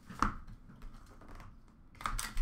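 Small cardboard trading-card boxes being handled: a sharp tap about a quarter second in, then faint clicks and rustling as a box is lifted and the next one picked up from a plastic bin.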